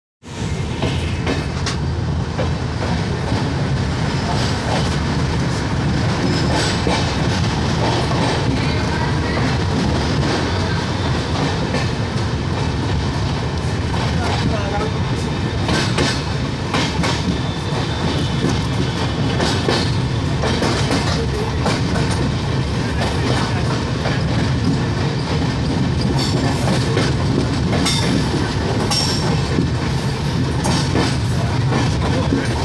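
Passenger train running, heard from the open doorway of a moving coach: a steady rumble of wheels on rail with scattered sharp clicks over the rail joints.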